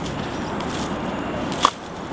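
Footsteps scuffing and sliding on dry leaf litter and loose soil while descending a steep slope, a steady crunching rustle with one sharp click about a second and a half in.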